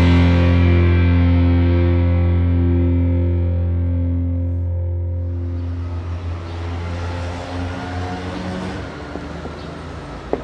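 The final chord of a rock song: a distorted electric guitar left ringing after a sudden last hit, slowly dying away. In the second half it thins into a low, noisy hum.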